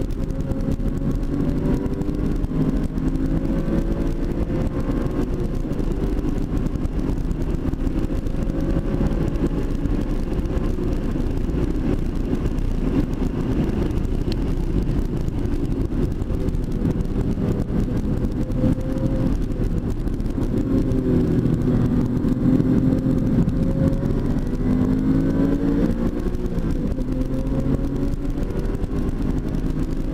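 Porsche 996 Carrera 2's flat-six engine heard from inside the cabin while lapping a track at speed, its pitch climbing and dipping repeatedly as the car accelerates and slows for corners.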